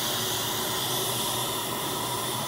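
Dental suction tip running in the patient's mouth: a steady, continuous hiss of air being drawn in.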